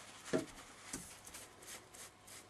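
Faint handling sounds: a few brief soft noises and rustles as a small water spray bottle and a paper towel are handled and the bottle is set down on the work board.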